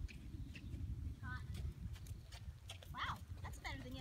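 Horse's hooves on arena sand as it canters on a longe line, a loose run of irregular dull hoofbeats. A few short vocal sounds from the handler come in about a second in and near the end.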